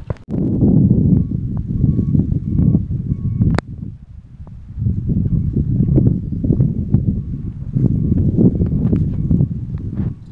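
Loud low rumbling buffeting on the microphone, in two long stretches with a break about four seconds in, and a sharp click just before the break.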